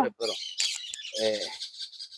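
Birds calling: a dense run of short, high chirps.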